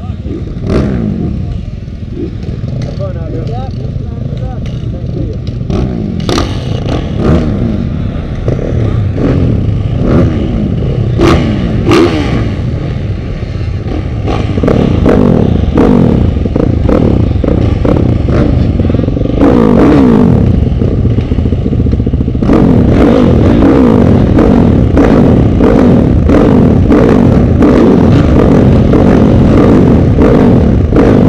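Several motocross dirt bikes revving at the starting gate, their engine pitches rising and falling against each other. A few sharp clicks come in the first half. The engines get louder about halfway through, and again near the two-thirds mark as many rev hard together.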